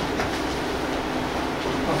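Steady room noise: an even hiss over a low hum.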